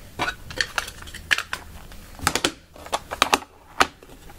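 Hockey trading cards being handled and shuffled by hand: a series of irregular sharp clicks and clacks as the cards knock together, with a quick cluster a little past the middle.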